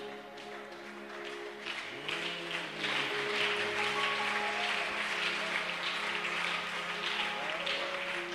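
Sustained instrumental music holding steady chords, with a congregation clapping and applauding from about two seconds in.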